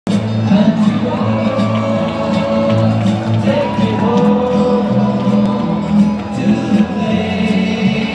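Loud rock music over an arena PA, with a large crowd singing along and cheering.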